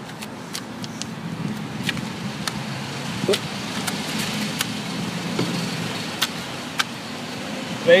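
A motor vehicle's engine hum, low and steady, swelling over several seconds and then easing off, with a few sharp light clicks over it.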